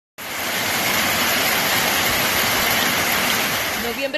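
Heavy rain pouring down on a street and parked cars, a dense, steady hiss with no letup.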